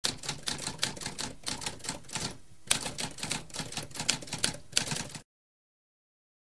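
Typewriter keys clacking in quick succession, with a short pause about halfway through, stopping about five seconds in.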